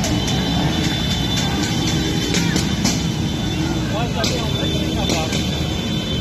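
Motorcycle engines running in a crowded street, a dense, steady low din with a few short sharp knocks. Voices shout briefly about four seconds in.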